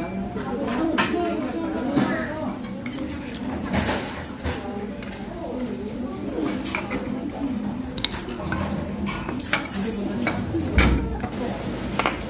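A metal spoon clinking and scraping against a stainless steel rice bowl and an earthenware soup pot as rice is scooped into the soup and stirred, with many short clinks throughout. Voices chatter in the background.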